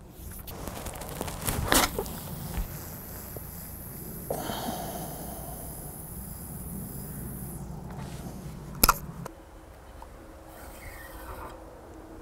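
A full-power distance cast with a 13 ft carp rod: a sharp swish about two seconds in, then a steady high hiss of braided line running off the reel's spool for several seconds, with low wind rumble. A single sharp snap comes near the end.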